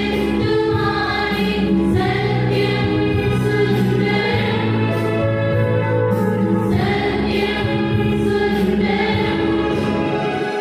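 A choir singing a hymn, with long held notes and phrases that rise and fall, running on without a break.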